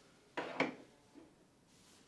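A small display plaque set down on a wooden display shelf: two light knocks about a quarter second apart, a third of a second in.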